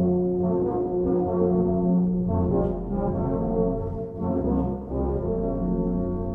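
Brass band playing slow, held chords in a euphonium medley.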